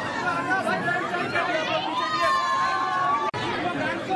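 A dense crowd of many people talking and calling out over one another at once. The sound breaks off for an instant a little after three seconds.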